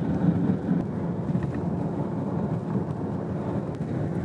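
Car driving at steady speed along a country road, its engine and tyre noise heard from inside the cabin as an even low rumble.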